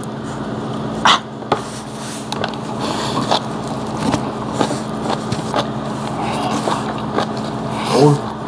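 A man slurping a long mouthful of ramen noodles in one continuous noisy pull, with a couple of sharp sucks about a second in.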